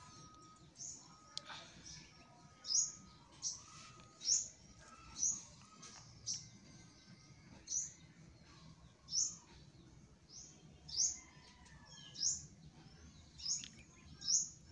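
A bird chirping repeatedly in the background: about a dozen short, high chirps, roughly one a second.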